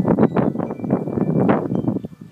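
Loud crackling and rustling handling noise from a homemade duct-tape-and-cardboard eyeglass headset being lifted and put on, with a faint high ringing from its chiming baoding ball.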